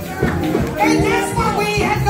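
Live church music: long, deep bass notes with voices over them, the voices fuller in the second half.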